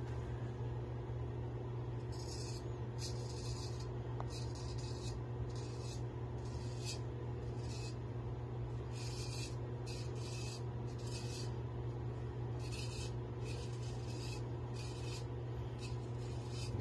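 Naked Armor Erec straight razor scraping lathered stubble on the neck: a dozen or more short rasping strokes, about one a second, starting a couple of seconds in.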